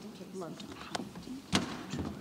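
Low murmur of voices in a large hall, with a few knocks and clicks; the loudest knock comes about one and a half seconds in.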